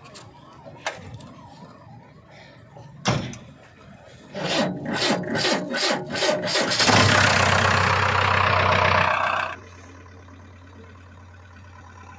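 JCB 3DX backhoe loader's diesel engine being started: a few clicks and a knock, then the starter cranking in a run of even strokes for about two and a half seconds. It catches, runs loud for a couple of seconds, and drops suddenly to a steady idle.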